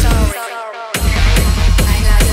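Hard techno DJ mix with a heavy four-on-the-floor kick. About a third of a second in, the kick and bass drop out for just over half a second, leaving only falling synth lines, then slam back in.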